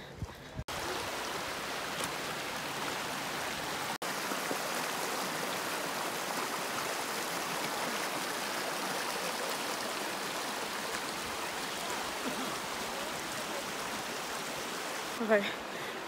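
Shallow, fast-flowing mountain creek rushing over stones, a steady water noise with one brief break about four seconds in.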